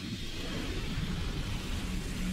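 Steady rush and low rumble of water draining away down a blue hole, added as a sound effect, swelling up as it begins.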